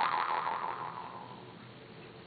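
Vietnamese three-tongued jaw harp ringing out on its last plucked note. The note fades away over about a second and a half.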